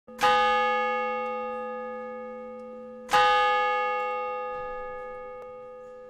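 A bell struck twice, about three seconds apart, each stroke ringing out and slowly fading.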